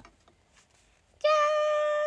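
A young woman's voice holding one long, steady, high-pitched "jaaan" (Japanese "ta-da") for about a second, starting a little over a second in and cutting off suddenly.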